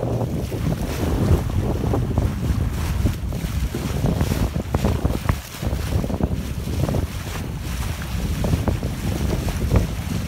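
Wind buffeting the microphone in uneven gusts over the rush and slap of choppy water along a moving sailboat's hull.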